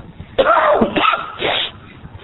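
A man coughing, three harsh coughs in quick succession starting about half a second in.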